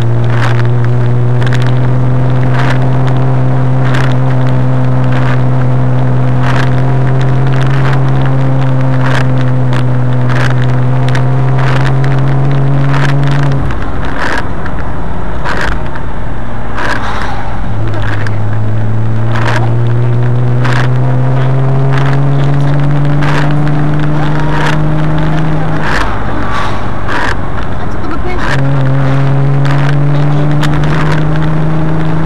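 Car engine heard from on board while driving, its note rising slowly as the car gathers speed; the engine note drops away about 13 seconds in and again about 26 seconds in, returning a few seconds later each time. Frequent sharp clicks and rattles run through it.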